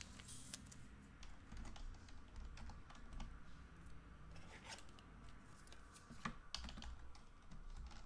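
Faint, irregular light clicks and taps of small objects being handled at a desk.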